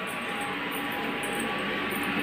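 A steady hum with a few faint held tones, getting slightly louder toward the end.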